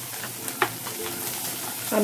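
Onion-and-spice masala frying in oil in a metal kadai, with a wooden spatula stirring and scraping it against the pan over a steady sizzle. The paste is being cooked down well (koshano) after chili powder has gone in.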